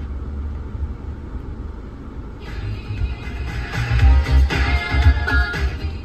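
Hilux's factory FM radio playing music through the cabin speakers. The music comes in about two and a half seconds in and gets louder as the volume is turned up, clear and without distortion. Before it, only a low rumble, the idling engine.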